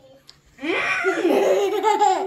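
A young boy laughing: one long, wavering laugh that starts about half a second in.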